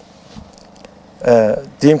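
A man's voice resumes after a pause of about a second, over a faint steady background hum.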